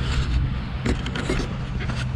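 Low rumble and a steady low hum on an outdoor microphone, with a few faint clicks and rustles of hands handling the small quadcopter.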